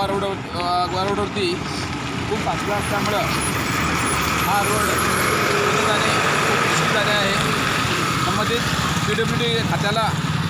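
Heavy goods truck driving slowly past at close range, its engine and road noise building and staying loud through the middle for several seconds, with a man's voice over it at the start and end.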